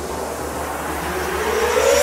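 A noisy whoosh in the soundtrack that swells louder, with a tone gliding upward in pitch over the last second, building like an electronic riser.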